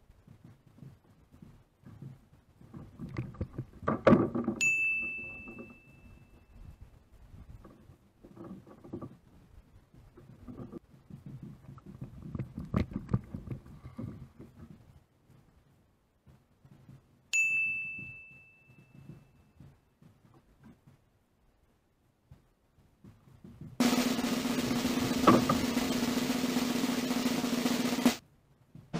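Rustling and clattering of a cast net and its line being handled and thrown. Two sudden bright ringing tones are added over it. Near the end a snare drum roll sound effect starts and runs for about four seconds, then cuts off abruptly.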